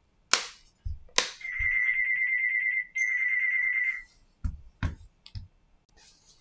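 Tablet being handled and pressed together, with sharp plastic clicks and soft knocks on the mat. Between them, a steady high-pitched electronic buzzing tone lasts about two and a half seconds, with a short break about halfway through.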